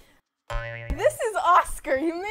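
Dead silence at an edit, then about half a second in a short buzzing tone with a click, followed by a woman's voice.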